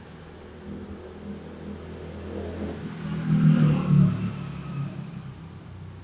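A motor vehicle's engine, building to a peak about three and a half seconds in and then fading away, as when a vehicle drives past.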